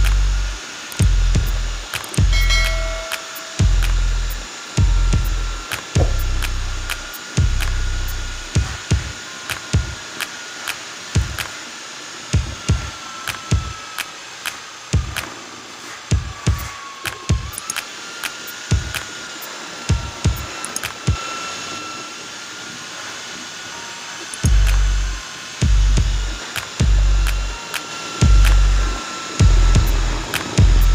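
Electric drill with a mixing paddle running steadily in a bucket of wall-skim cement mix, its motor whine dipping briefly in pitch about halfway through as the paddle takes load. Background music with a heavy bass beat plays over it, dropping out in the middle and coming back near the end.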